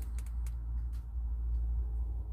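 Low steady background hum with a single faint click about half a second in.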